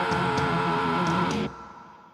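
Heavy metal band playing live, electric guitars holding a long sustained chord. The band stops dead about a second and a half in, and the sound rings out and fades away.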